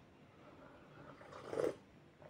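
A single short sip from a glass mug of lemon water, about one and a half seconds in.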